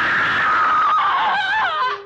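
House cat giving one long, loud meow that holds steady, then wavers and drops in pitch near the end.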